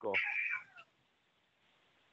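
A brief meow-like cry, about half a second long, heard through narrow phone-line audio.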